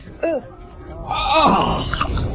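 Voices groaning in disgust: a short falling 'oh', then about a second in a longer falling groan with a breathy hiss over it.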